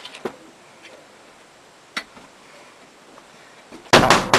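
A few isolated light clicks and taps in a quiet, small studio room. Right at the end comes a loud drum-kit hit that rings on.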